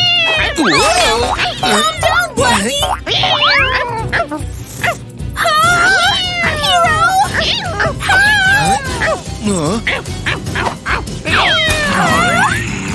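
Cartoon animal vocal effects: a cat yowling and snarling, and a dog barking about halfway through, over background music.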